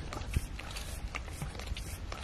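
A pug's noisy breathing and snuffling, with irregular small clicks over a low rumble.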